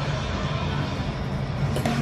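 Restaurant background noise with faint music playing, and a short click near the end.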